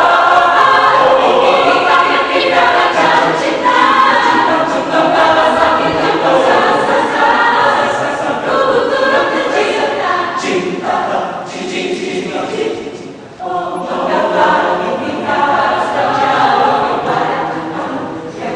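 Mixed-voice university choir of men and women singing an arrangement of an Indonesian pop song together. There is a brief drop about thirteen seconds in, after which the full choir comes back in at once.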